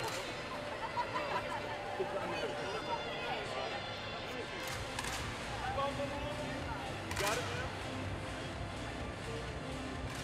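Indistinct chatter of a group of people in a large, echoing hall, with a few short clicks or knocks.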